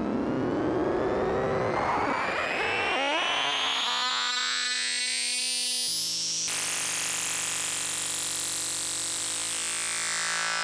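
Doepfer A-100 analog modular synthesizer patch. A gritty, noisy texture runs under a slowly rising pitch sweep; about three seconds in it turns into a lattice of crisscrossing rising and falling tones, and about six seconds in into a held cluster of steady tones with a high rising whistle.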